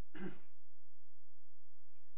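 A person clearing their throat once, a short single burst just after the start.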